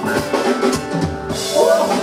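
Live funk band playing, with the drum kit to the fore: bass drum and snare hits over bass and keyboard notes.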